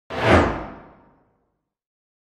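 A single whoosh sound effect for an animated logo reveal: it comes in suddenly with a deep low end, then fades out over about a second.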